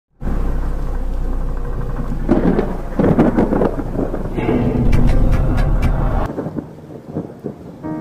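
Thunderstorm sound effect: a heavy rumble of thunder with rain hiss, surging in louder crashes a few seconds in and dying away about six seconds in. A soft piano begins near the end.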